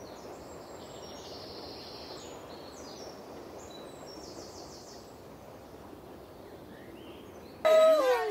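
Steady outdoor background noise of a garden, with faint high chirps; a voice breaks in near the end.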